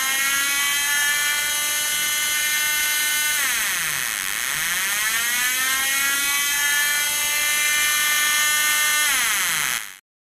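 Homemade transistor-multivibrator air-raid siren sounding through a large paper-cone loudspeaker, pretty loud: a buzzy wailing tone that holds steady, slides down in pitch about three and a half seconds in and climbs back up, then slides down again near the end and cuts off.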